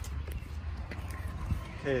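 Faint rustling and light handling of a cardboard box and its plastic-wrapped contents as the box is opened, with a couple of soft clicks, over a steady low rumble.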